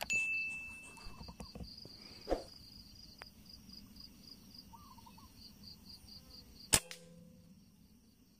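A bright bell-like ding from a subscribe-button sound effect at the start, over insects chirping in a steady pulse about three times a second. Near the end comes a single sharp crack, the loudest sound, with a brief ring after it.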